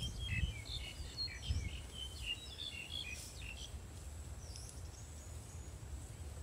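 Small birds chirping: a quick series of short, high notes through the first three seconds or so, then a few thin, scattered calls, over a faint low background rumble.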